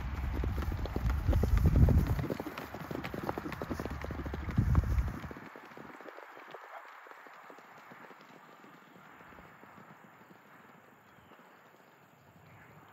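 Rapid hoofbeats of two ridden horses on grass. They are loud and close for about the first five seconds, then fade as the horses move away.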